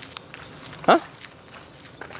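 Footsteps on a dirt path, faint scattered scuffs and clicks, with one brief cry rising steeply in pitch about a second in.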